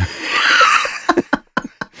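A person laughing: a breathy laugh for about the first second, then a few short chuckles.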